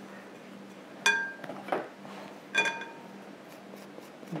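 Metal spoon clinking twice against a glass mixing bowl of buttered graham cracker crumbs, each clink ringing briefly, with a soft scrape of crumbs between.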